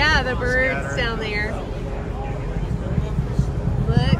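Distant low rumble of a SpaceX rocket's engines as it climbs overhead after launch, steady throughout, with people's voices over it in the first second or so.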